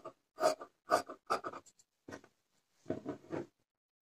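Tailor's scissors snipping through blouse cloth: a run of about nine short cuts, roughly two a second, with a brief pause a little after two seconds in.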